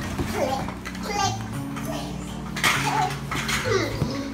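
A small child's voice making short calls and sounds while he climbs on an inflatable vinyl play tent, with the vinyl rubbing and rustling against him; a louder rustling burst comes about two and a half seconds in.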